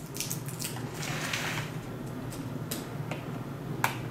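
Adhesive tape being picked at and peeled off a plastic incubator lid: small crackles and light ticks, with a sharp click near the end.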